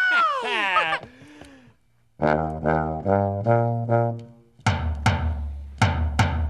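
Tuba playing a short run of separate low notes, joined near the end by a few beats on a small drum.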